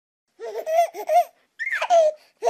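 Baby laughing: about four short giggles in quick succession, then a high squeal that falls in pitch near the end.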